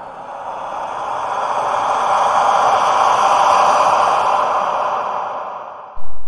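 Editing sound effect: a long whoosh of noise that swells for about three seconds, then fades and cuts off.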